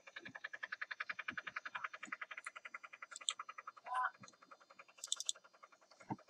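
A frog-like croaking call: a fast, even train of pulses at about ten a second that fades out after about three seconds. It is followed by one short louder call near four seconds and a few faint high clicks about five seconds in.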